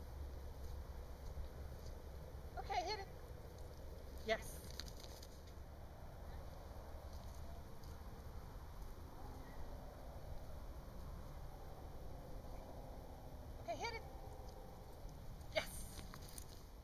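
A dog giving two short whining yelps that bend up and down in pitch, about three seconds in and again near the end, with a couple of sharp clicks between.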